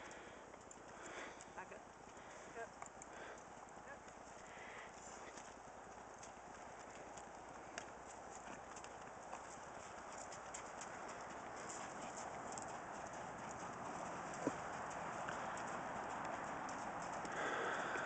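Hoofbeats of a ridden Rocky Mountain Horse mare on dirt and gravel, a run of light clicking strikes. Under them is a steady rushing noise that grows louder toward the end, with a single sharp knock near the three-quarter mark.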